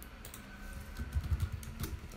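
Typing on a computer keyboard: a couple of keystrokes near the start, then a quick run of them in the second half.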